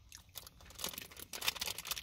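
Faint crinkling and crackling of a foil-lined plastic snack wrapper handled in the hand, a scatter of short crackles.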